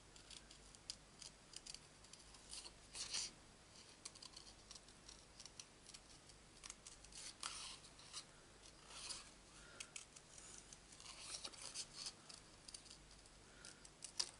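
Scissors snipping through cardstock, cutting a stamped flower out by hand: faint, irregular short snips with brief pauses between them.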